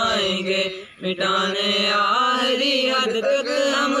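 A group of schoolboys singing a patriotic Urdu national song (milli naghma) together without instruments, holding long drawn-out notes, with a brief breath pause about a second in.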